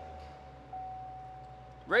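Chevrolet Corvette's 6.2-litre V8 just after being started, its start-up rev dying away toward a low, steady idle. A thin, steady high tone sounds over it.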